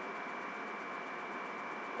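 Steady hiss with a constant thin high whine and no distinct events: the background noise of a webcam recording in a quiet room.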